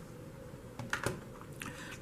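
A few faint, short clicks and taps against quiet room tone.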